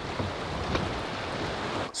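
Steady rushing of river current, with wind rumbling on the microphone.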